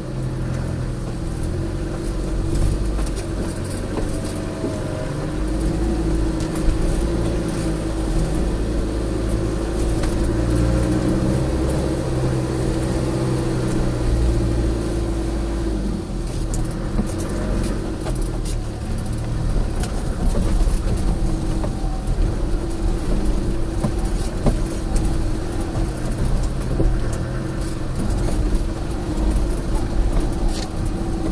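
4x4 engine running at low revs as the vehicle crawls over a rocky track, a steady drone with small shifts in pitch, with scattered clicks and knocks over it.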